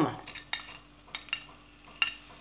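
A few light clicks and taps of a ceramic plate and utensil as steamed garlic cloves are tipped off it into a stainless steel pan of olive oil and spices.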